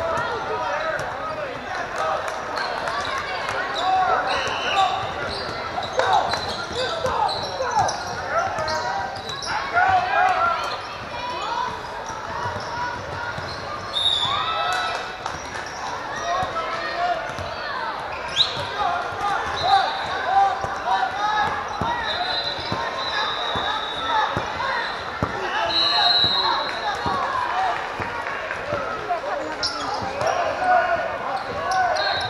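Basketball game in a large gymnasium: basketballs bouncing on the hardwood court amid the indistinct chatter and calls of players and spectators, echoing in the hall, with a few short high-pitched squeaks.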